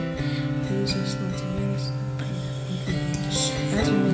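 Background music with guitar: held chords that change just after the start and again near the end, with a few light percussive hits.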